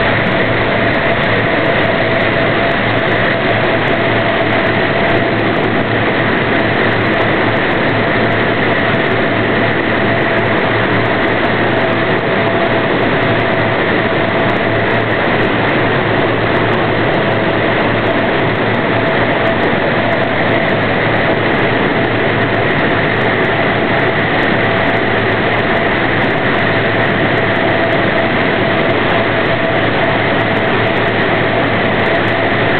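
Steady turbine noise from a C-130 transport plane: a constant loud rush with a high, even whine that holds unchanged throughout.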